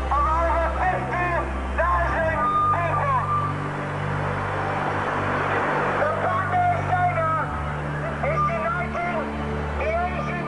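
A voice talking over background music with a steady low drone, and a stretch of rushing noise in the middle.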